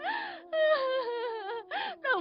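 A woman wailing and sobbing in anguish: long, drawn-out cries that bend up and down in pitch, broken by short catches of breath about half a second in and again near the end.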